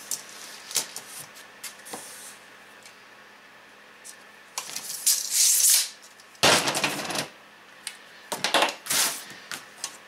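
Workshop handling sounds: a few light clicks and taps, then a hiss as a steel tape measure slides back over foil-faced foam board about five seconds in, a louder scraping rush just after, and a short clatter near the end as a metal straight edge is picked up.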